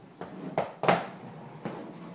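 Several irregular hard clacks of children's roller skates being set down on a hardwood floor, about four in two seconds.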